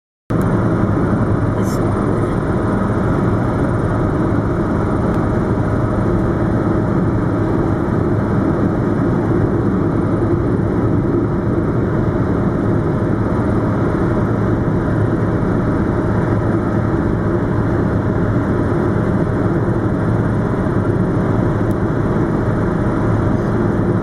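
Steady road and wind noise of a car driving at highway speed, heard from inside the car: tyres on the pavement and air rushing past, loud and unchanging.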